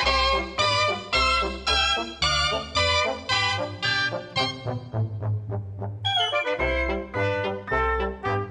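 A cobla playing a sardana: shawms (tenoras and tibles), trumpets, trombone and double bass, with a steady pulse of about two beats a second. A little past the middle the upper melody drops away for about two seconds, leaving the low bass notes, then the full band comes back in.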